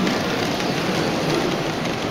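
H0-scale model steam train rolling along its track with a steady rumble, under the background noise of a busy exhibition hall.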